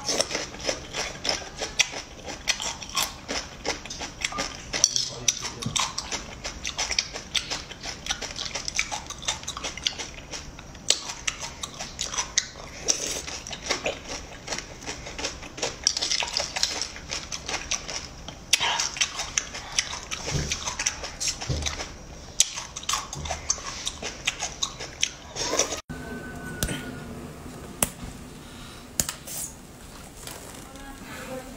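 Close-up eating of raw mud snails: rapid wet clicks, slurps and chewing, with a metal spoon clinking and scraping on the plate. About 26 s in the sound cuts off abruptly and a quieter, different passage follows.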